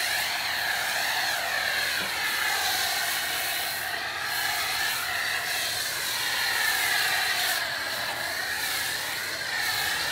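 Pressure washer running, spraying water and foam through a foam cannon: a steady hissing spray over a machine whine whose pitch slowly wavers up and down.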